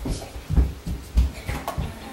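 A small child's bare or socked feet thumping on a rug-covered floor as she dances and runs, about five dull thumps.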